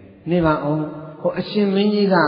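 A Buddhist monk's male voice reciting in a chanting, sing-song delivery, with long held notes, beginning just after a brief pause.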